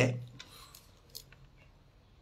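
The last syllable of a man's voice fades out, then a few faint, short clicks come in near quiet.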